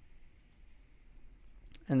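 A few faint computer mouse clicks as items are picked from a dropdown menu.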